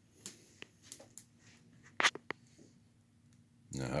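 Cedar kindling fire crackling in a wood cookstove's firebox: a handful of sharp pops, the loudest about two seconds in.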